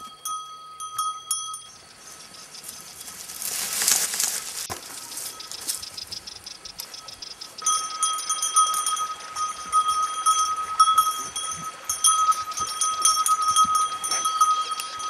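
A cow's neck bell clanking as the cow walks, ringing briefly at the start, then again steadily from about eight seconds in almost to the end. A brief rustling hiss around the middle.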